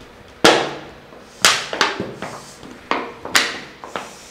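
A series of sharp knocks, about five at irregular spacing, each dying away quickly, the first one the loudest.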